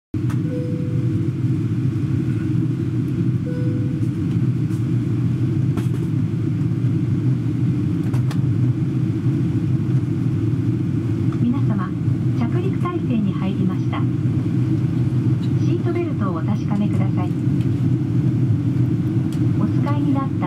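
Steady low cabin roar of an ANA Boeing 777-200 in flight, the engine and airflow noise heard from a seat inside the cabin. From a little past halfway, a cabin announcement in Japanese comes in over the PA on top of the roar.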